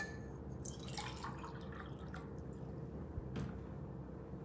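Faint splashes and drips of water in a steel tumbler, a cluster of them about a second in, with a soft knock a little over three seconds in, over a low steady room hum.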